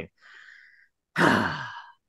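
A person's audible sigh: a faint breath in, then a longer exhale that slides down in pitch and fades away.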